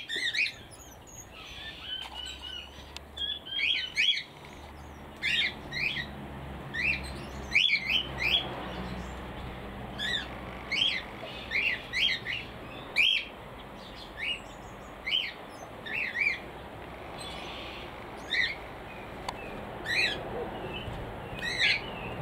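Small aviary birds chirping: short, sharp calls repeated about once a second, some in quick pairs.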